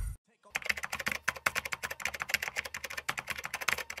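Keyboard typing sound effect: a rapid, uneven run of key clicks starting about half a second in.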